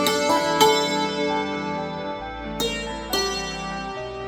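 Iraqi santur (hammered dulcimer) struck with hammers, playing a slow melody whose notes ring on and overlap. A few strikes stand out sharply, and a low bass note comes in about halfway through.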